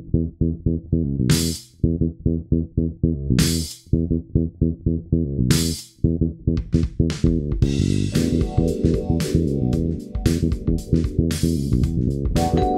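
Electric bass guitar riff of short, quickly repeated plucked notes, with a cymbal crash about every two seconds. From about halfway, drums come in and the groove fills out with the bass.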